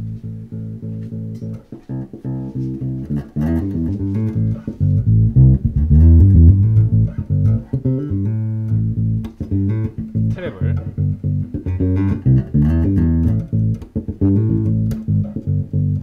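Electric bass guitar played fingerstyle in a repeating riff through an EBS MicroBass II preamp while its bass EQ knob is turned. The low end swells and is loudest about five to seven seconds in.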